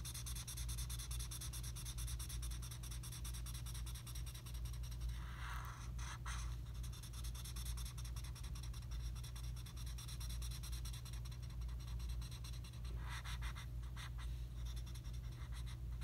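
Felt-tip marker rubbing across paper in quick back-and-forth shading strokes, with two louder stretches about five and thirteen seconds in. A steady low hum runs underneath.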